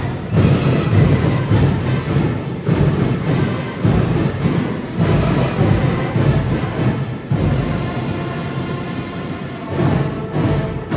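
School marching band playing live: a large drum section of bass drums and snares with brass, with heavy drum accents throughout.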